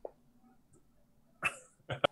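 Two short breathy vocal bursts from a person, about one and a half and two seconds in, over faint room tone.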